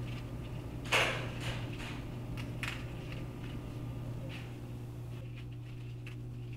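Romaine lettuce leaves being cut from the plant: a few short, sharp clicks, the loudest about a second in, over a steady low hum.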